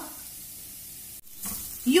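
Faint, steady sizzle of food frying in a pan on the stove. It cuts out suddenly a little past halfway and then comes back.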